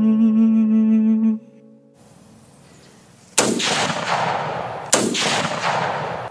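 A held musical chord stops about a second in. After a brief faint hiss come two loud gunshot sound effects, about a second and a half apart, each followed by a long echoing tail.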